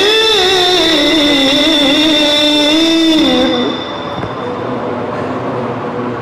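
A man's voice reciting the Quran in the melodic tajweed style into a microphone: one long, ornamented phrase with held, wavering notes that ends a little over three seconds in. After it, only a quieter, steady background noise remains.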